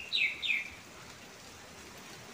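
A small bird chirping twice in quick succession, each a short note falling in pitch.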